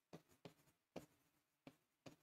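Faint writing sounds: a handful of short, separate pen strokes, the strongest about a second in.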